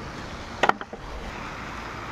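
Steady outdoor background noise with one short click a little under a second in.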